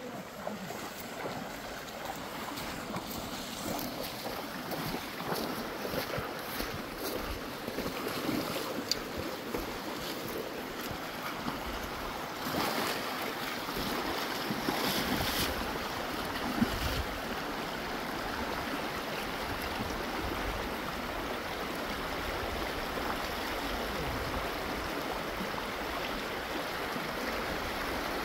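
Shallow stream rushing steadily over stones, with scattered splashes from someone wading through the current and handling a cast net, busiest for a few seconds near the middle.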